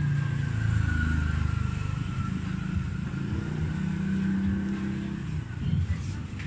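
A motor engine running, its low pitch shifting a little.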